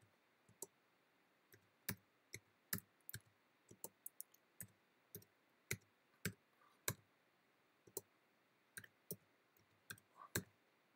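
Faint computer keyboard keystrokes as numbers are typed one key at a time: separate, irregular clicks about two a second.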